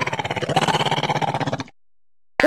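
Cartoon stomach-growl sound effect: a fast rattling rumble that rises and falls in pitch, the sign of hunger. It stops abruptly about a second and a half in.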